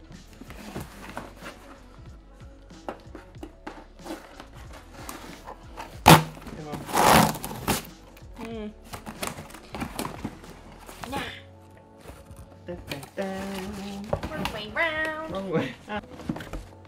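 A cardboard delivery box being opened by hand: scattered cardboard knocks and rustles, a sharp knock about six seconds in, then about a second of tearing as the packing tape is cut and pulled. Background music runs under it, and a voice is heard near the end.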